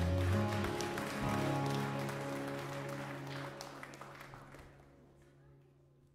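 Live worship band of electric guitars, bass, keyboard and drums ending a song on a held final chord that fades away over a few seconds, with scattered clapping from the congregation.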